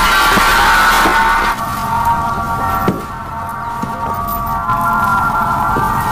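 Film soundtrack music: a sustained, droning chord of held high tones, with a few soft knocks. A low rumble under it drops away about a second and a half in.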